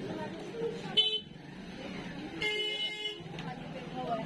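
Vehicle horn honking twice in a busy street: a short toot about a second in, then a longer honk of under a second in the middle, over a background of street chatter.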